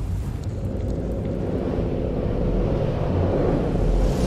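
Cinematic intro sound effect: a deep, steady rumble with a faint droning hum above it.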